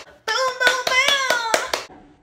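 A high-pitched voice chanting in a sliding tune over quick, sharp hand claps, about five a second, in a small room. The phrase starts just after a brief gap and stops near the end.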